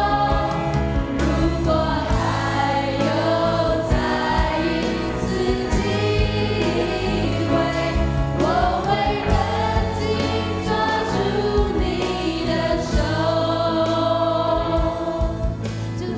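A live worship band playing a Mandarin praise song: several mostly female voices sing the melody together over electric guitar and keyboard with a steady beat.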